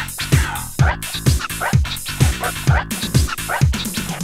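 Italo house track playing: a four-on-the-floor kick drum about twice a second, with short sliding high-pitched sounds laid over the beat.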